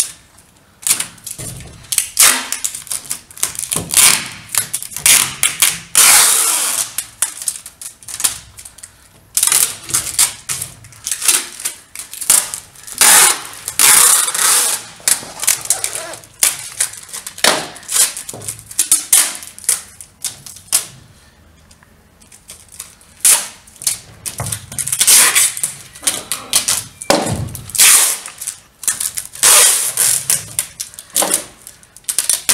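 Clear adhesive tape pulled off the roll in repeated rasping rips, some short and some drawn out for two or three seconds, as it is stuck over the glass of a mirror. There is a short lull about two-thirds of the way through.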